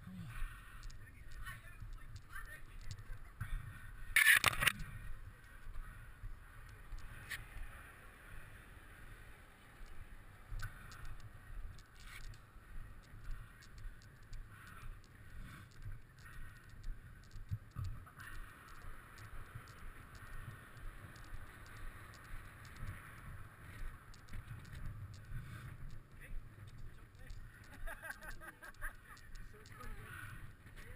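Footsteps of someone walking on a leaf-covered woodland path and then along a bridge walkway, with a low wind rumble on the microphone. A brief loud noise stands out about four seconds in.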